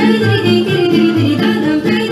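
Upbeat folk backing music played over a PA loudspeaker, with a repeating low bass line, starting just before this moment.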